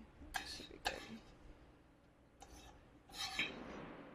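A metal spoon clinking and scraping in a skillet of cooked corn: two sharp clinks in the first second, another a little past the middle, and a longer scrape about three seconds in.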